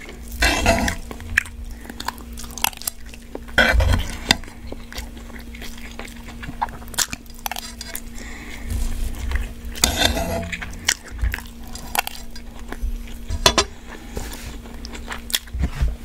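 Close-miked eating of crispy ramen fried rice: a metal spoon scraping and clinking against a nonstick frying pan, with chewing and crunching in between.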